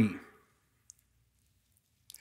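A man's voice trails off at the start, followed by near silence with one faint, short click about a second in.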